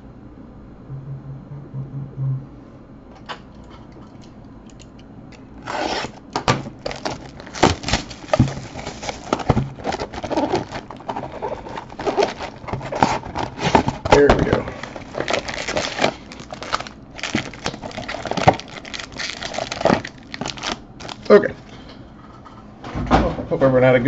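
A trading-card hobby box being unwrapped and opened by hand. From about six seconds in comes a dense run of plastic-wrap crinkling and tearing, cardboard handling and foil card packs being pulled out and set down.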